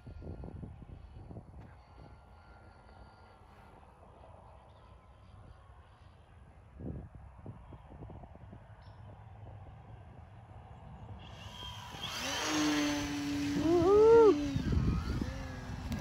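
The 2216 brushless motor and 10x7 propeller of an Eclipson GO1 Wolfe RC plane on 4S power. At first it is faint while the plane is far off at low throttle. About twelve seconds in it is throttled up into a loud whine whose pitch swoops up and down, peaking a couple of seconds later.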